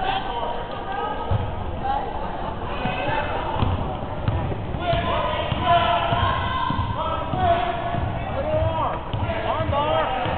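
Basketball dribbled on a hardwood gym floor, a run of low bounces starting about a second in, under the voices and shouts of spectators in the gym.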